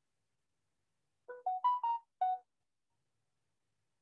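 A short electronic notification jingle of five quick notes, first rising and then falling in pitch, lasting about a second, starting just over a second in.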